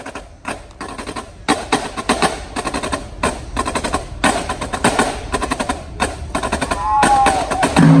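Marching drumline playing a cadence: snare drums and tenor drums with bass drums and cymbals, in fast dense strokes that grow louder toward the end.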